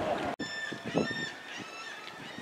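Three short, high honking bird calls, with faint knocks underneath. The sound cuts out for an instant about a third of a second in, at an edit.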